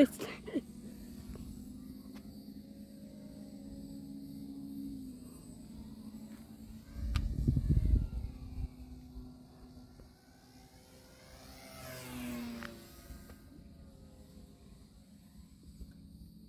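Faint outdoor ambience with a steady low hum for the first five seconds. A gust of wind buffets the microphone about seven seconds in, and a weaker swell follows near twelve seconds.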